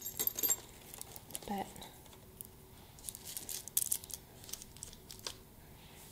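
Faint crinkling of plastic-wrapped candy and light clicks of small items being handled and set into a woven gift basket, in scattered short bursts.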